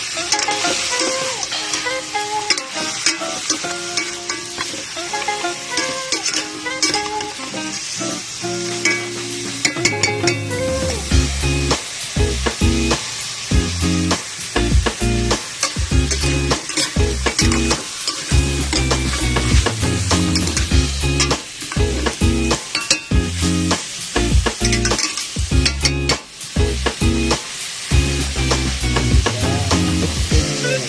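Chicken pieces and ginger sizzling in a metal pot as a spoon stirs them, scraping and clicking against the pot. Background music plays under it and picks up a bass beat about ten seconds in.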